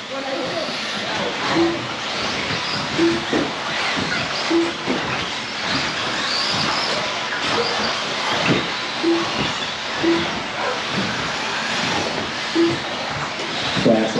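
Several 1/10-scale electric RC buggies with 17.5-turn brushless motors racing on turf: a steady mix of motor whine and tyre noise, with scattered knocks. Short low beeps recur every one to three seconds.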